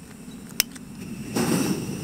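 A single sharp click, then about a second later the steady rush of a small camping gas stove's burner catching and running under a pot.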